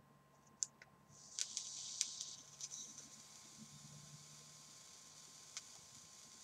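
A click, then faint hissing and crackling with more clicks for about a second and a half, easing to a fainter hiss: the coil of a Short DID rebuildable atomizer firing on a mechanical mod, with e-liquid sizzling on the wire.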